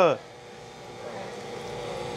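Soda fountain dispensing into a plastic pitcher: a steady, soft rush of pouring liquid that slowly grows louder. The end of a shout cuts off just at the start.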